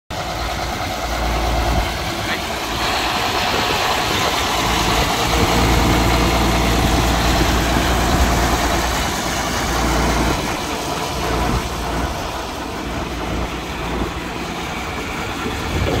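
John Deere 4440 tractor's turbocharged six-cylinder diesel engine idling steadily.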